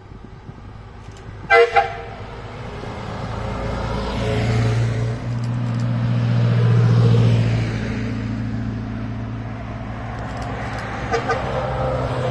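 Two short horn toots about a second and a half in, then the diesel engines of passing vehicles, a Karosa 700-series bus followed by a small red fire truck, growing louder as they go by close and loudest about seven seconds in. Two more quick horn toots come near the end as the next bus draws near.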